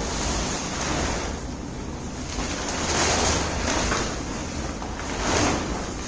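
Rustling and flapping of a large patterned sheet as it is shaken out and spread by hand, swelling louder about three seconds in and again near the end.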